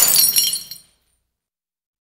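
Glass shattering: scattered shards tinkling, with a few short high ringing tones, dying away before a second in.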